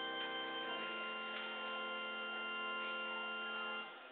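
Pipe organ holding sustained chords. The chord changes less than a second in, and the sound is released shortly before the end.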